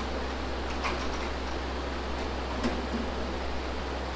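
A few faint, sharp clicks of clecos being set with cleco pliers in an aluminium trim tab, over a steady fan-like hum.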